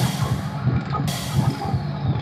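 Electronic music from a hard-EDM sample-pack demo: a low, rumbling bass with irregular low hits. About halfway through, a burst of hiss swells in, carrying a faint falling tone.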